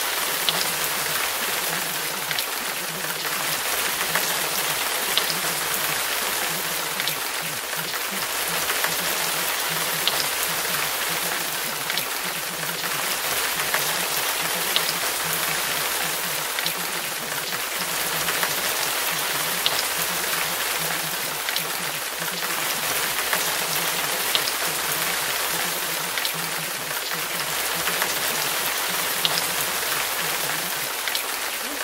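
Steady rain noise with faint scattered drip ticks.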